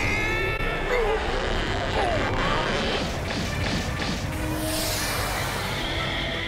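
Anime battle sound effects: crashing, smacking impacts over background music. A character shouts with a gliding pitch at the start, and a whoosh comes near the end.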